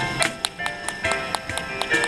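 Live acoustic music: plucked string notes ringing over sharp percussive clicks, several a second.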